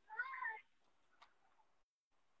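One short high-pitched call, about half a second long, shortly after the start, followed by a faint click a little past the middle.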